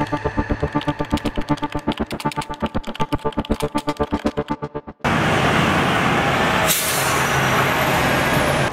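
Electronic intro music with rapid, even pulsing that thins out and stops abruptly about five seconds in. It gives way to steady heavy road traffic, trucks and cars running past, with a brief burst of hiss about seven seconds in.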